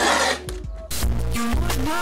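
Grip tape being scraped along the edge of a skateboard deck with a hand tool, scoring it for trimming. It breaks off and music with a bass line starts about a second in.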